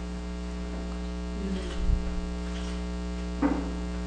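Steady electrical mains hum with a buzzy stack of overtones in the recording, left bare in a pause between spoken sentences, with a faint brief noise about two seconds in.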